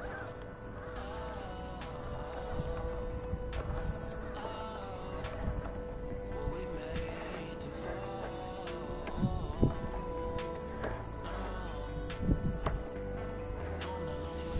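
Background music: a steady held note under a wavering higher line.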